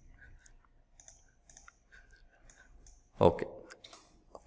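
Faint, irregular clicking from a computer being worked at, about a dozen scattered clicks over three seconds. A man says "Okay" near the end.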